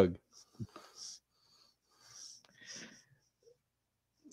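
A man's spoken word ends just after the start, then it is mostly quiet with a few faint, short breath-like hisses and small mouth or mic noises.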